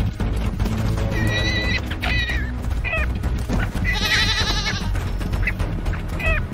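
Guanaco giving short, high-pitched bleating calls about a second apart, with one longer trembling call about four seconds in, over background music.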